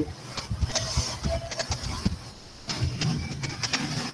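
Low background noise on a video-call microphone with scattered faint clicks and rustles, a run of quick clicks a little past the middle.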